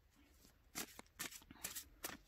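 Faint, quick flicks and rustles of a deck of cards being shuffled by hand, a handful of short strokes in the second half.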